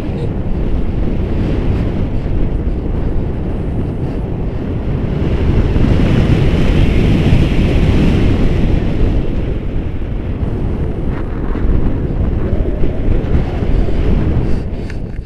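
Wind buffeting the camera's microphone in flight under a tandem paraglider: a loud, steady low rush of airflow, swelling a little in the middle.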